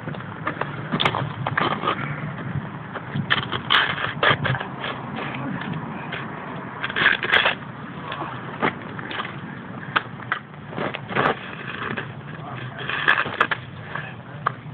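Plastic toy shovel scraping and crunching into packed snow in short, irregular strokes, with louder bursts of crunching now and then.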